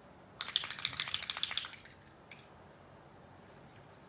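Small bottle of glitter alcohol ink shaken hard, rattling quickly for about a second and a half, shaken to mix the ink before it is dropped onto the card.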